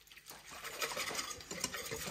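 Wire whisk stirring chili seasoning mix and water in a stainless steel bowl: quick, quiet clicks and scrapes of the wires against the metal.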